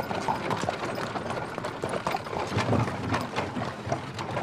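Horse hooves clip-clopping on stone paving as a horse-drawn carriage moves along, a quick irregular run of clicks and knocks.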